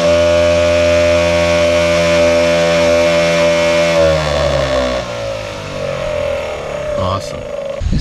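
Wildgame Innovations deer feeder's spinner motor running a timer test cycle: a steady electric whine for about four seconds, then it cuts off and the pitch falls as the spinner coasts to a stop.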